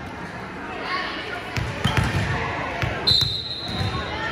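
Indoor volleyball gym between rallies: voices chattering and a ball bouncing on the hardwood floor a few times, then a referee's whistle blown about three seconds in and held for about a second, the signal to serve.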